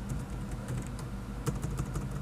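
Typing on a computer keyboard: scattered keystrokes, then a quick run of several about one and a half seconds in, over a steady low hum.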